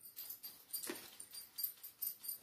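Rustling and handling noises as fabric and craft supplies are moved about and set down, with a short, sharper scuff about a second in.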